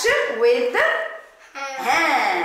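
A dog barking, a run of short pitched barks about two a second, with a brief pause about a second and a half in.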